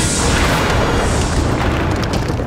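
Dramatic sound effects: a deep, steady rumble with a whoosh at the start that falls away over about a second, as a hand bursts up out of the ground, over background music.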